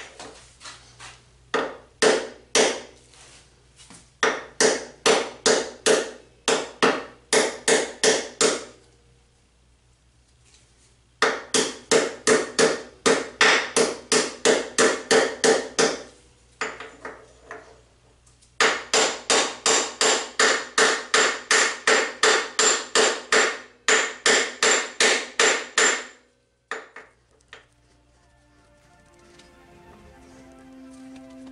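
Hammer blows on steel at a motorcycle's steering head, driving a steering head bearing race, with a ringing metal clank on each hit. Three runs of rapid blows at about three a second, with short pauses between them.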